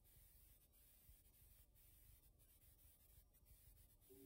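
Near silence: only the faint hiss and low hum of an old film soundtrack's noise floor, with a few faint ticks.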